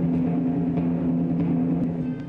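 Soundtrack music: a held low chord over a rumbling timpani-like drum roll, beginning to fade at the very end.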